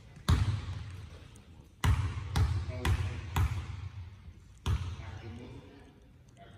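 A basketball bouncing on a hardwood gym floor, each bounce echoing in the hall. There is a single bounce, then a run of four dribbles about two a second, then one more bounce.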